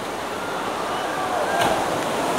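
Steady rush of ocean surf breaking against rocks, with faint voices of onlookers in the background.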